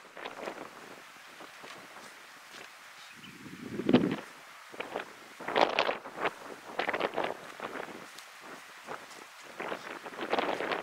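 Footsteps and brush rustling as a person walks through dry scrub, in uneven crackles, with a brief low thump about four seconds in.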